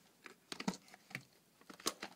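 A plastic clamshell VHS case handled and opened by hand: a few light clicks and taps of plastic, the sharpest near the end.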